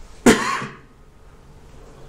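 A single short cough from a person, sudden and loud, about a quarter of a second in.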